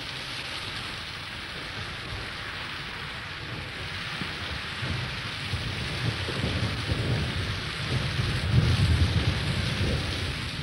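Rain falling steadily as an even hiss, with a low rumble swelling in the second half and loudest about nine seconds in.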